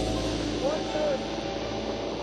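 Low, steady rumble of a boat engine with wind on the microphone, and a brief faint voice around the middle.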